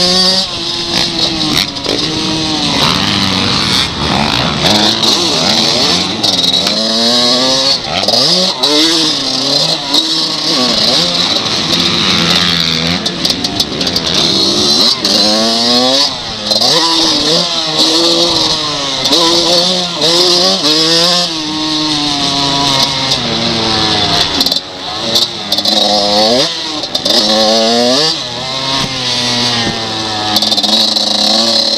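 Kawasaki KX125's 125 cc two-stroke single-cylinder engine revving hard while racing, its pitch climbing and dropping over and over as the rider accelerates, shifts and chops the throttle, with a few brief drops in loudness. A steady rush of wind runs over it.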